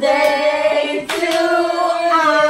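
Several voices singing together in long held notes that step up in pitch about a second in, with a few sharp hand claps, two of them close together about a second in.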